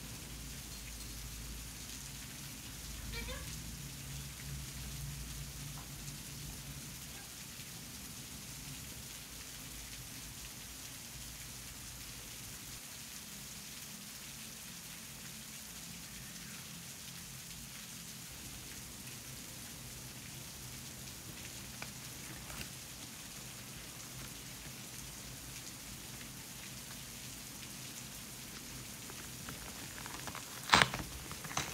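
Faint steady rain falling in the background, an even hiss through the whole stretch.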